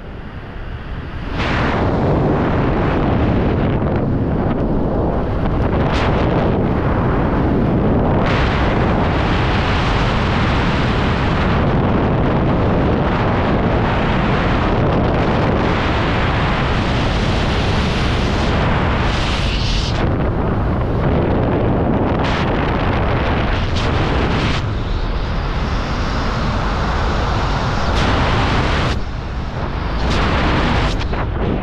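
Wind rushing over the camera microphone during a descent under an open parachute canopy: loud, gusty buffeting that eases briefly about a second in and again a few seconds before the end.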